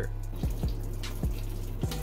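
Hot cooking water pouring in a thin stream from the drain holes of an instant noodle cup's lid into a stainless steel sink: the noodles being drained.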